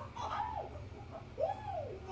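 A person's voice making two short hums that rise and fall in pitch, over a steady low hum.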